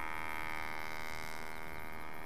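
Radio-controlled scale Gipsy Moth model plane's motor droning steadily in flight, a constant pitched hum with a thin high whine.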